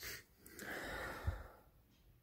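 A person's breath close to the microphone: one exhale lasting about a second, with a short click at the start and a soft low thump near the end.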